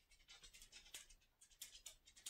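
Faint scratchy strokes of a makeup brush blending powder eyeshadow on the eyelid, several short brushes in quick succession.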